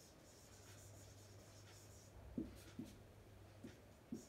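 Faint scratching and squeaking of a marker pen writing on a whiteboard, with a few soft taps in the second half.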